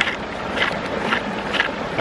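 MSR Guardian hand-pump water purifier being pumped, in regular strokes about two a second, drawing water through an intake screen that sits only half submerged.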